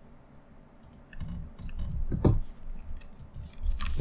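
Computer keyboard and mouse clicks as a query is edited, a few irregular clicks and light knocks starting about a second in.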